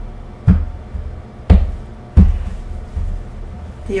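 Packets of tarot cards set down on a table as the deck is cut: three thumps, the first about half a second in, the next two about a second and then under a second later.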